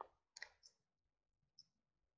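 Faint computer mouse clicks over near silence: one at the start, a quick pair about half a second in, and a last small click near the end.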